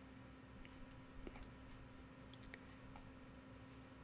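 Near silence: a faint steady hum with a handful of faint, separate computer mouse clicks.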